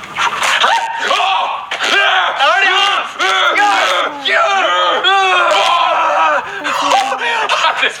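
Two young men letting out short, repeated yells, screams and laughs as they are jolted by shock collars.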